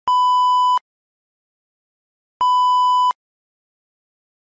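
Two identical electronic beeps, each a steady single-pitch tone lasting about three-quarters of a second, starting and stopping abruptly, a little over two seconds apart.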